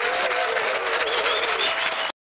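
Studio audience applauding, a dense steady clapping with some cheering voices over it.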